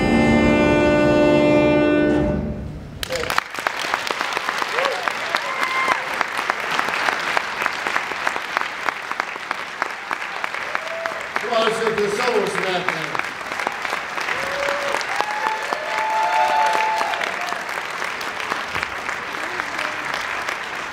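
A jazz big band holds its final chord for about two and a half seconds and cuts it off together, then the audience applauds, with scattered shouts and whoops through the clapping.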